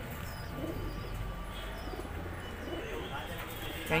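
Domestic fancy pigeons (Borderwale kabutar) in a wire loft cage giving a few soft, low coos, one under a second in and another near three seconds.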